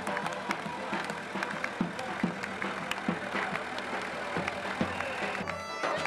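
Live Greek folk music from a street band: a large double-headed drum struck about twice a second under accordion and a sustained wind instrument. About five and a half seconds in, the sound changes abruptly to another stretch of the same kind of band music.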